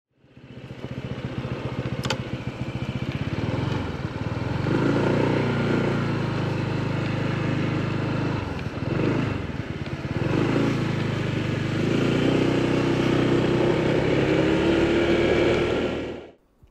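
Honda ADV160 scooter's single-cylinder four-stroke engine running while under way, heard from the handlebars. It picks up a few seconds in, eases off briefly about halfway, then pulls again with a slowly rising pitch. A single click about two seconds in.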